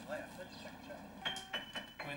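Faint background voices, then a short clink with a high ringing tone in the last second.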